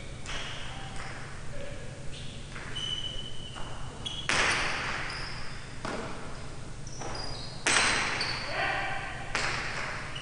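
Jai alai pelota striking the court walls during a serve and rally: three loud cracks, the first about four seconds in and two more near the end, each ringing on in the big hall.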